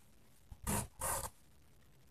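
Satin ribbon being pulled through woven huck fabric: two short zipping pulls, each about a third of a second, one right after the other.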